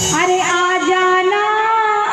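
A woman singing one long held note of a Bundeli folk song over a harmonium, the pitch stepping up slightly about halfway, with no drumming under it.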